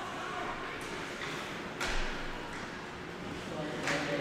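Ice rink ambience: a murmur of voices from the stands with a few sharp clacks of sticks and puck on the ice, the loudest, with a thud, about two seconds in.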